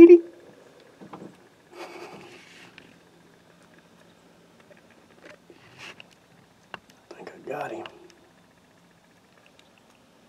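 Mostly quiet, with two short bursts of faint whispering and a few soft handling clicks as a handheld camera is moved. A loud sound cuts off right at the start.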